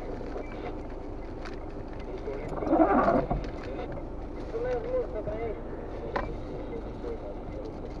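Inside a car's cabin, a low steady engine rumble with a windshield wiper sweeping once across the rain-wet glass about three seconds in. The wiper runs on an intermittent setting, with the next sweep about six seconds later.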